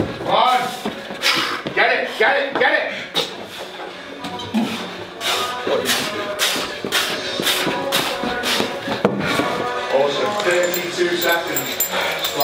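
Voices shouting encouragement over music, with a quick run of sharp knocks around the middle.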